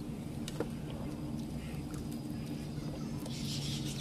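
A steady low motor hum, with a few small clicks from hands and plates as food is eaten by hand. A high, hissing chatter comes in just after three seconds.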